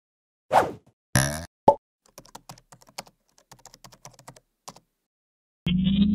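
Animated-graphics sound effects: a few quick pops, then a run of keyboard-typing clicks lasting about three seconds, and a short tone rising slightly in pitch near the end.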